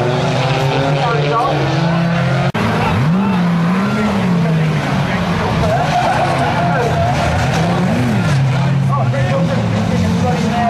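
Banger-racing cars' engines running hard as they race, rising and falling in pitch as they rev, with tyres squealing and skidding. The sound breaks off for an instant about two and a half seconds in, at a cut.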